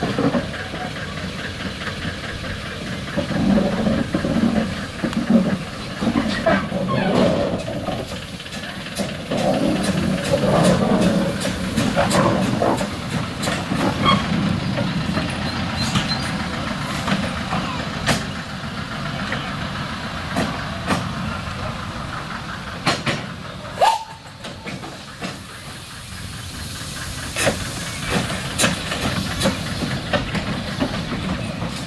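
Henschel Monta narrow-gauge steam locomotive moving slowly, with scattered knocks and clanks from its running gear and wheels on the track. Near the end steam hisses from the cylinders.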